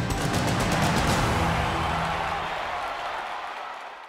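TV sports-show ident music: a rhythmic run of percussive hits ends on a last hit about a second in, which rings on and fades away.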